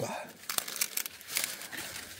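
Corn plants' leaves and stalks rustling and crinkling as they are brushed and handled, with scattered small snaps and clicks.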